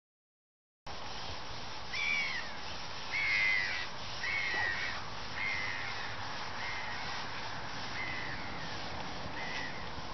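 A bird calling outdoors: seven short calls about a second apart, loudest near the start and getting fainter, over a steady background hiss. The sound starts abruptly about a second in, after dead silence.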